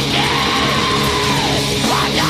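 Black metal music: a dense wall of distorted guitars and drums, with a harsh screamed vocal held for nearly two seconds, its pitch arching slightly up and then falling away near the end.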